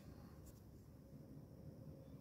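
Near silence with faint pencil strokes on drawing paper along the edge of a drafting machine's scale, and one faint tick about half a second in.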